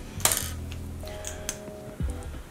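Small makeup items handled on a hard surface: one sharp click about a quarter second in, then a couple of lighter ticks, over background music.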